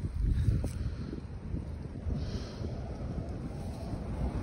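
Wind buffeting the microphone: an uneven low rumble with no other distinct sound.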